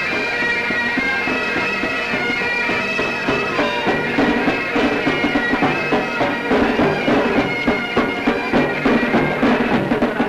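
Military pipe band: bagpipes playing a tune over their steady drone, joined by drum beats from about four seconds in.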